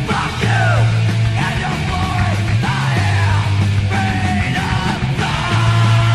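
Punk rock song: a singer yelling the lyrics over the full band, with a heavy bass line underneath.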